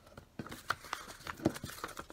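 A magazine page being folded and creased by hand: irregular paper crinkles and sharp little clicks, busier from about half a second in.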